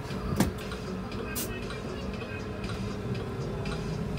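City bus heard from inside: its engine running with a steady hum as the bus pulls away from a stop. A sharp knock comes about half a second in and a lighter click about a second later.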